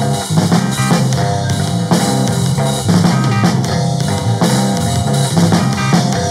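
Rock music played by a band, with drum kit and guitar keeping a steady beat.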